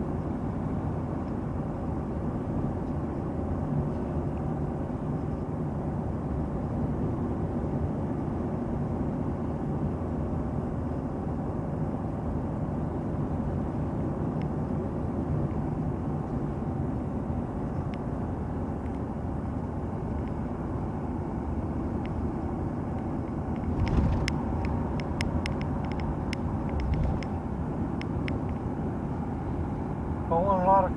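Steady road and engine noise of a car heard from inside its cabin while cruising. About six seconds before the end there is a thump, followed by a few seconds of short clicks and rattles.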